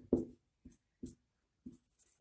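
Marker pen writing on a whiteboard: a handful of short, separate strokes as Devanagari letters are written.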